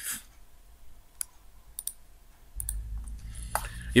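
A few sharp, isolated clicks, roughly a second apart, from the pointing device used to write on the screen. A low hum comes in after about two and a half seconds.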